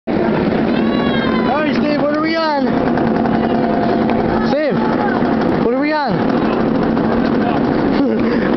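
Inverted roller coaster train running on its steel track, a loud steady rumble with a low hum under it. Riders' voices call out three times over it, each call rising and falling in pitch.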